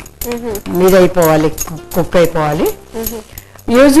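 Speech only: a voice talking, with a short pause late on before the talk resumes.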